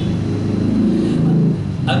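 Only speech: a man's voice, low-pitched and drawn out, with no other sound.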